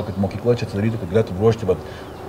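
A man talking in Lithuanian, in quick stretches of speech.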